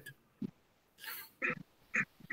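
A man's soft, short chuckles: several quiet bursts of laughter.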